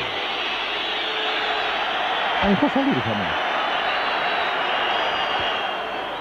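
Football stadium crowd noise, a steady din of many voices from the stands, with a single word of TV commentary about two and a half seconds in.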